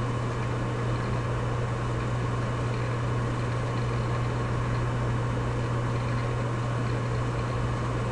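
Steady low hum with a constant hiss, unchanging throughout: the background noise of the recording room and microphone.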